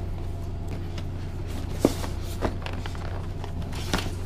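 Cardboard box lid being handled and lifted off, with a few sharp clicks and taps over a steady low room hum.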